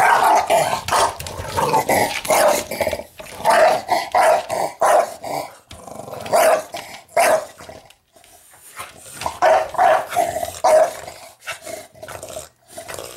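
English bulldog growling and barking in repeated short bursts, with brief lulls about 3, 6 and 8 seconds in.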